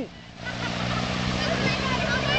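Steady low engine hum, with faint voices in the background.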